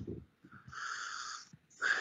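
A man's audible breath through the mouth, a soft rasping intake about a second long, taken in a pause between sentences of a spoken reading.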